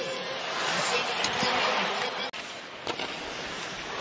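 Hockey arena crowd noise, a dense wash of many voices. It is louder for the first two seconds or so, breaks off abruptly a little past two seconds, and then carries on at a lower level.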